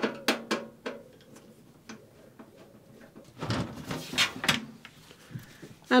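A screwdriver working out the screws on top of a PC case's side panel: a quick run of sharp clicks in the first second. About three and a half seconds in, a second of scraping and rattling as the panel is handled.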